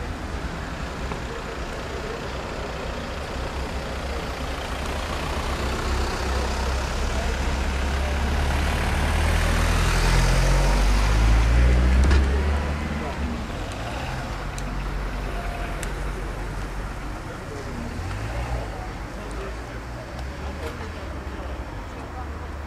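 A car drives past on the street close by, its low engine and road rumble building over several seconds to its loudest about ten to twelve seconds in, then falling away, with voices murmuring underneath.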